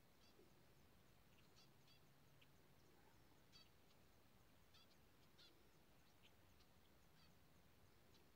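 Near silence outdoors, broken by faint, scattered short high-pitched chirps at irregular intervals.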